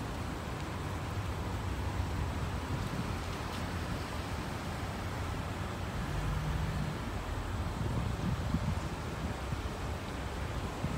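Steady low vehicle rumble with wind noise on the microphone, gusting a little near the end.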